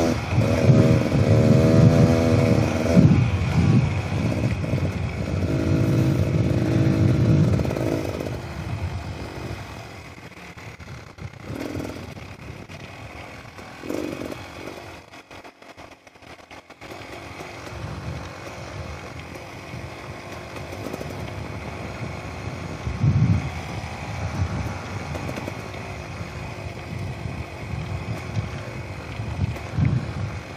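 Beta Xtrainer 300 two-stroke dirt bike engine pulling away hard, its pitch climbing through the gears for the first several seconds. It then drops to a quieter, lower-throttle run through the middle, falling lowest about halfway. It picks up again and runs steadily for the rest.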